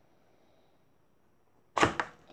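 Near silence, then near the end one sharp metallic clack: a metal spoon knocking against an opened tin can of cat food.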